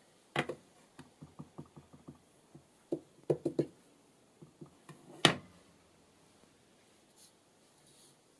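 A clear acrylic stamp block tapped on an ink pad and pressed onto paper on a tabletop. A quick run of light taps comes in the first couple of seconds, a cluster of knocks around three and a half seconds, and the loudest sharp knock a little after five seconds.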